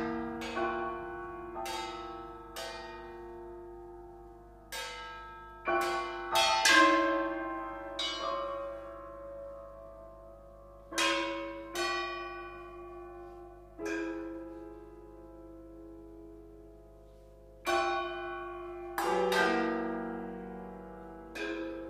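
Contemporary chamber music for piano and percussion: sparse, separate struck notes, about a dozen spread unevenly through the stretch, each left to ring and die away before the next. Two strikes come close together near the end.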